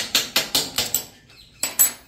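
Steel hinge pieces and bolts clinking against each other and the steel table: about six quick clinks, a short pause, then two more with a bright metallic ring near the end.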